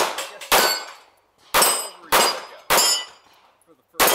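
A handgun fired in quick succession at steel plate targets: five shots in under three seconds, each with the bright ring of the struck steel plate. Then comes a pause of over a second before the next shot at the very end.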